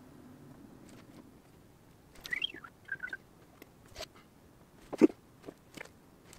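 Pen tracing on masking tape over a plastic welding helmet, with faint squeaks and small handling clicks, while the helmet is held and turned. A sharp knock about five seconds in is the loudest sound.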